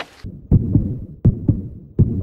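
Heartbeat-style intro sound effect: deep, low thumps in lub-dub pairs, a pair about every three-quarters of a second.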